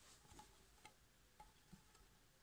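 Near silence: room tone with a few faint, sharp clicks, about four over two seconds.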